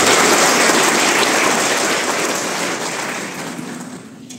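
An audience applauding, loud at first and fading away toward the end.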